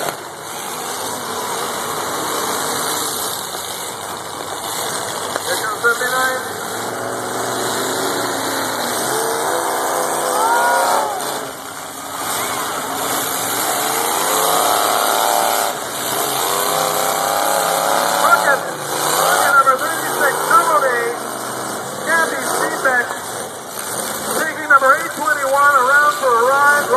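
Demolition derby cars' engines revving up and down again and again as they push and ram one another, heard over a steady crowd din, with a few sharp knocks of cars hitting.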